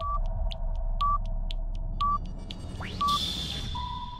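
Electronic countdown timer sound effect: a short high beep once a second with quick ticks about four a second between them, over a steady low hum. Just before the third second a rising sweep leads into a burst of hiss, and near the end a longer, slightly lower tone begins.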